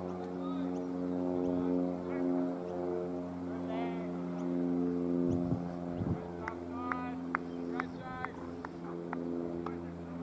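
A steady hum holding several fixed pitches, with short faint calls and chirps over it around the middle.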